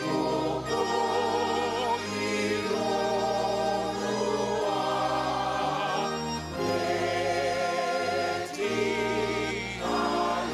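Church congregation singing a hymn with organ accompaniment: sung notes held with a wavering vibrato over steady organ chords.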